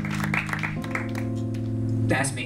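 Instrumental hip-hop backing track playing: held chords that move to a new chord a little under a second in.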